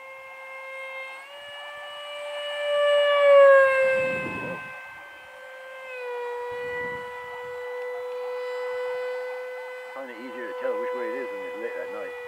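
Whine of the 64 mm electric ducted fan on a Hobbyking Sonic 64 RC jet in flight. It is loudest about three to four seconds in and drops in pitch as the jet passes, then settles into a steady, slightly lower whine.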